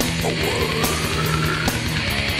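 Death metal recording playing: heavily distorted guitars over bass and drums, with a drum and cymbal hit a little under a second apart.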